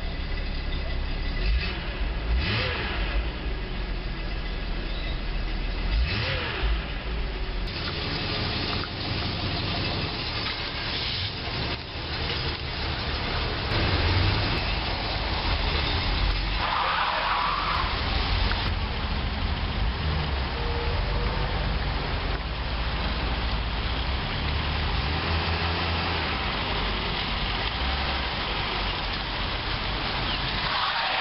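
Car engine heard from inside the cabin, revved up twice in the first few seconds, then running steadily as the car drives off.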